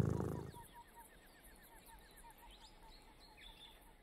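A low purring rumble fades out in the first half second. Then faint small-bird chirps repeat about four times a second, with a few higher calls near the end.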